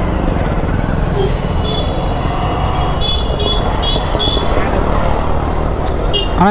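Motorcycle engine running at low speed in street traffic, a steady low rumble. A few short, high-pitched beeps sound in the middle.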